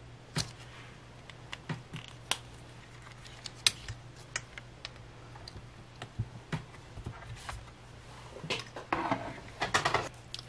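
Scattered light clicks and taps from handling craft tools and paper: a felt-tip marker at work and a slimline card being lifted out of a hinged stamping platform. A faint steady hum runs underneath.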